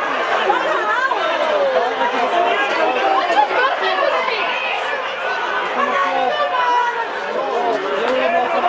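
Several people's voices talking and calling at once, overlapping into a steady chatter with no single clear speaker.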